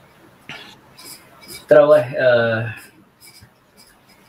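A man speaking one short phrase between quiet pauses, with a brief click about half a second in.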